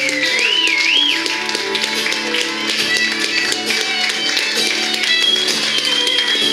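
Live rock band playing, with electric guitars and a violin; a high note slides up and down in the first second.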